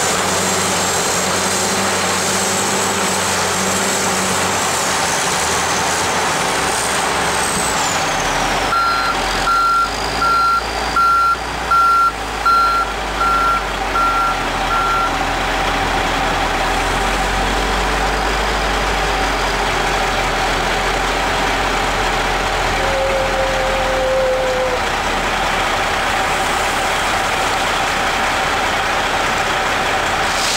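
Heavy truck running at a work site. A reversing alarm beeps at one steady pitch about once a second for around six seconds, starting about a third of the way in. The engine's deep rumble grows heavier from about the same moment.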